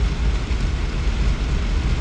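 Steady road and engine rumble inside a vehicle's cabin while driving, with no marked changes.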